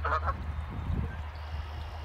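Canada geese honking: a couple of quick honks right at the start, ending a run of calls, then no more.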